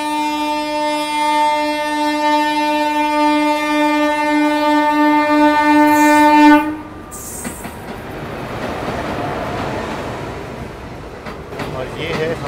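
Indian Railways electric locomotive sounding one long, steady horn note as it approaches on the adjacent track; the horn cuts off suddenly about six and a half seconds in. After that comes the rumble and clatter of its passenger coaches running past close by.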